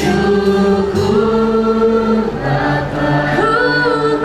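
Worship team of mixed male and female voices singing a praise song in harmony, holding long sustained notes.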